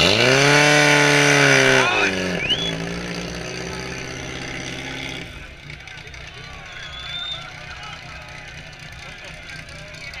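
Portable fire pump's engine running hard at high revs with a loud hiss. About two seconds in it drops in pitch, then runs lower and steady until it stops about five seconds in.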